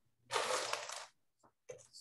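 A short scraping rustle, under a second long, from a wooden painting panel being taken hold of and moved on the work table.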